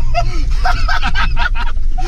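Jeep driving off-road over a rough mud track, heard inside the cabin: a steady low rumble of engine and tyres with a string of rattles and knocks, mixed with short bursts of laughter.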